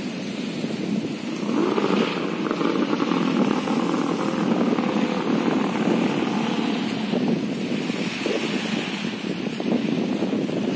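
A motor engine running, its note wavering slightly as it passes, loudest from about a second in until around seven seconds, over steady outdoor background noise.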